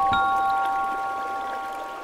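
Slow, gentle chime music: a couple of bell-like notes struck near the start ring on and slowly fade, over a faint wash of water.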